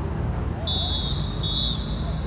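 Referee's whistle blown twice, a half-second blast and then a shorter one, shrill and steady in pitch, over faint voices on the pitch.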